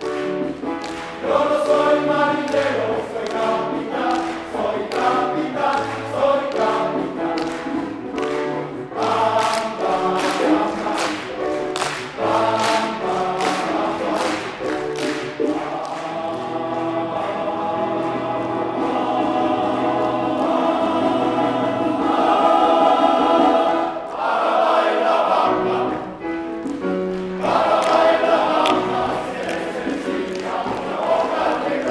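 Men's choir singing an upbeat number. Through roughly the first half, a steady beat of sharp strokes runs under the voices at about two a second.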